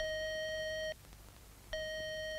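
Telephone line tone heard through a landline receiver: a steady electronic beep about a second long, then after a short gap a second identical beep, like an engaged or disconnected-line signal.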